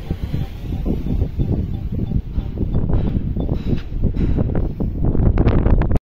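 Wind buffeting the microphone: a loud, irregular low rumble that turns gustier in the last couple of seconds.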